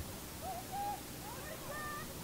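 Distant high-pitched voices calling out across an open field: a short wavering call about half a second in and another, higher, drawn-out call near the end, over a steady background hum.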